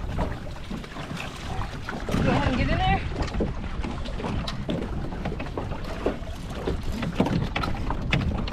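Water splashing and sloshing around people wading in a duck trap and dip-netting diving ducks, with wind buffeting the microphone and scattered knocks and clatter. A brief voice rises about two seconds in.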